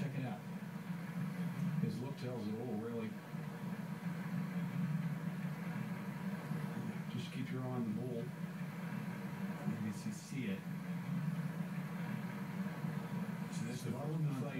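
Golf broadcast audio from a television speaker: faint commentary in a few short phrases over a steady low hum.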